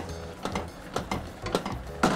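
A utensil stirring a cream sauce in a metal pan, clicking and scraping against the pan several times at an uneven pace over a low steady hum.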